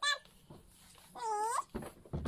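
A small child's high-pitched voice: the end of a sung note at the very start, then one short sing-song vocal note about halfway through, with a low bump just before the end.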